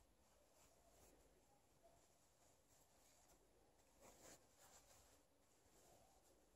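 Near silence, with faint rustling of a sheer fabric scarf being handled, a little louder about four seconds in.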